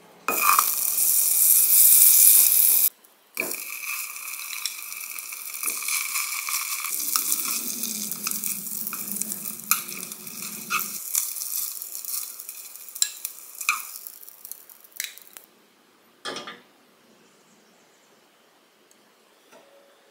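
Butter and pollock roe sizzling in a nonstick saucepan: very loud for the first three seconds, then a steadier sizzle that fades away about fifteen seconds in. Wooden chopsticks click against the pan as the roe is turned, and a single knock follows near the end.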